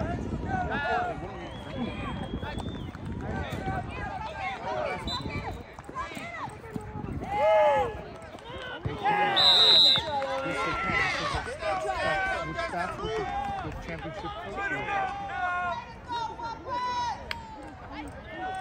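Several voices of sideline spectators and players talking and calling out over one another, with a loud shout about seven and a half seconds in. About nine seconds in comes a short, high, steady whistle blast, a referee's whistle stopping or starting play.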